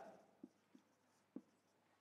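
Marker pen writing on a whiteboard, heard as a few faint short strokes against near silence.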